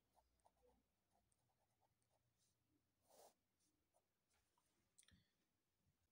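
Near silence, with faint ticks and a brief scratch about three seconds in and again near five seconds in: a marker tip writing and underlining on paper.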